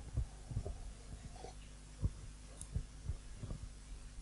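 A man drinking from a mug and swallowing close to a head-worn microphone: about five soft, low thumps over a steady low electrical hum.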